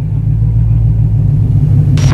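Intro sound effect: a loud, steady low rumble like an engine at idle, with a burst of whooshing noise starting right at the end.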